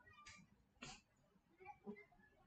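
Near silence: room tone with a few faint, brief sounds, two short bursts about a third of a second and about a second in.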